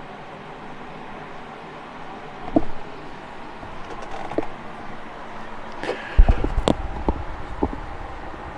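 Steady background noise with a few short knocks and clicks, then from about six seconds in a low rumble under a cluster of sharp clicks and knocks.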